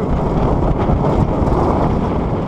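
Roller coaster train racing along the track just after its launch: wind roaring over the camera's microphone over a steady, loud rumble of the train's wheels on the steel track.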